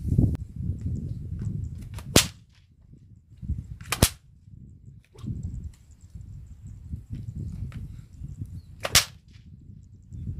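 Homemade whip being swung and cracked: three sharp cracks, about two, four and nine seconds in.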